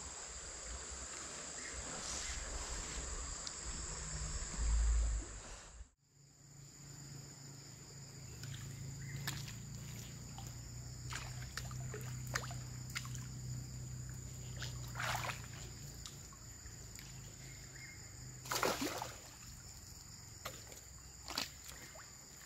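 Water sloshing and splashing at the edge of a river as a rope stringer of fish is drawn out of it, with several short splashes, the strongest about three-quarters of the way through. Insects chirr steadily in the background.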